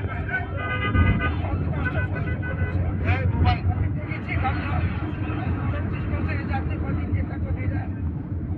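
Mostly speech: a voice talking close to the microphone amid other voices, over a steady low engine hum. A steady pitched tone sounds for about two seconds near the start.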